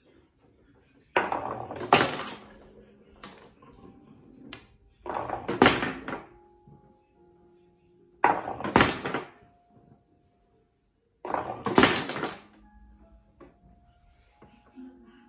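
Marbles rolled down a homemade wooden mini bowling lane, four times about three seconds apart: each time a short rolling rumble ends in a sharp clatter as the marble knocks into the small pins.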